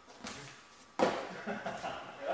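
A single sharp smack of body contact between two sparring partners about a second in, as a counter strike lands, followed by voices.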